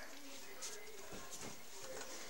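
A few faint soft taps and rustles over a quiet room background from a dog shifting about in a person's arms on a bed.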